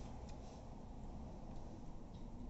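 Corgi puppy faintly chewing and gnawing a raw chicken leg, with a couple of small wet clicks about a quarter second in.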